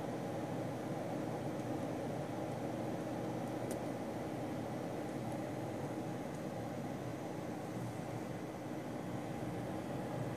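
Cooling fans of a rackmount PC in an ARK IPC-4570 case running, a steady whir, not outrageously loud. A faint click is heard a little under four seconds in.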